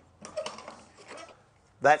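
Light knocks and clatter of wooden pieces being handled and set down on a workbench, a short irregular run in the first second or so.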